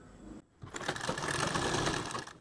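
A domestic sewing machine running steadily, stitching a seam through two layers of fabric. It starts about half a second in.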